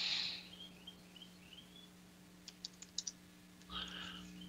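A short run of computer keyboard keystrokes, about half a dozen quick clicks around two and a half to three seconds in, typing a new ticker symbol into charting software. A faint steady electrical hum lies underneath, with a soft rush of noise at the start and again just before the end.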